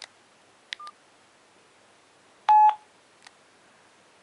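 Keypad tones from a CSL Euphoria One DS720 candy-bar phone as its menu keys are pressed. A click with a short beep comes under a second in, then a louder, longer beep about two and a half seconds in.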